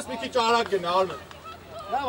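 Men's voices shouting short calls across the pitch, several overlapping, loudest in the first second and then dropping off.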